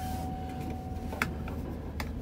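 Low, steady engine and road rumble heard inside a car's cabin as it rolls slowly. A faint thin tone fades out about a second in, and there are a few light clicks.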